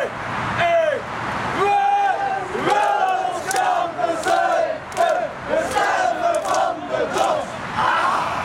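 A group of people shouting a chant together in unison, with long held notes and sharp claps spread through the second half.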